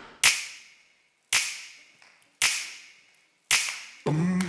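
Four sharp snaps, about a second apart, each dying away over roughly a second.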